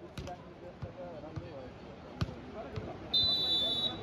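A volleyball bounced on the hard dirt court a few times, with one loud knock about two seconds in. Then a referee's whistle is blown as one steady blast of just under a second near the end, the signal for the serve. Crowd chatter runs faintly underneath.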